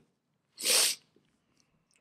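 A man's quick, sharp intake of breath close to the microphone: one short hiss about half a second in, taken between sentences while reading aloud.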